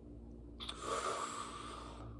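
A man's long, noisy breath, starting suddenly just over half a second in and lasting about a second and a half, with no voice in it.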